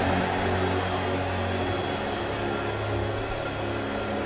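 Keyboard playing sustained, held chords with a deep bass note underneath, a soft steady worship pad.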